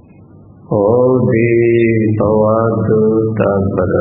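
A Buddhist monk chanting Pali verses in a male voice: long, drawn-out syllables held on a nearly level pitch, starting just under a second in after a short pause.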